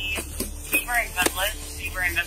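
A person's voice speaking indistinct words, with a few sharp knocks, over a steady low hum.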